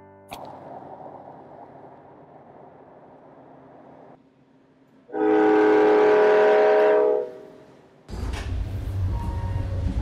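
A diesel train horn sounds once, a steady chord of several tones lasting about two seconds, as the train sets off. Near the end a low, steady rumble of the locomotive and rolling train starts up.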